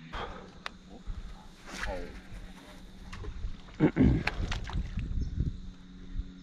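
A man clearing his throat, with a louder, gravelly throat-clearing sound about four seconds in. A few light clicks and a steady low hum run underneath.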